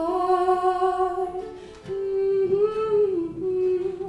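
A woman humming a melody into a microphone in long held notes, one note of about two seconds, then a second that bends up and back down, with a ukulele softly behind.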